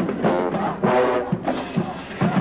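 Marching band playing: brass horns in short phrases over drums.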